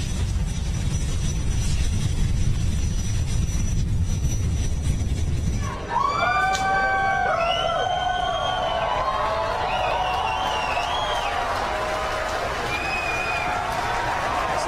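Falcon 9 rocket's nine Merlin engines during launch, a steady low rumbling roar for about six seconds. Then an abrupt cut to a crowd cheering and whooping.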